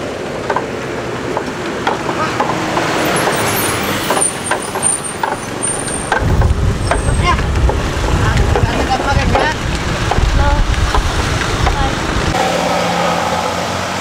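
Wooden bullock cart drawn by two zebu oxen rolling along a paved road: irregular knocking and clattering from the cart, over road traffic. A heavy low rumble runs from about six to twelve seconds in.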